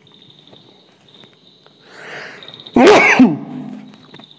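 A man sneezing once, loudly, about three quarters of the way through, after a breathy intake about half a second earlier.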